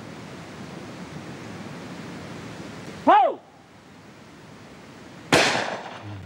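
A short shouted call for the clay about three seconds in, then a single shotgun shot about two seconds later, the loudest sound, with a short echoing tail.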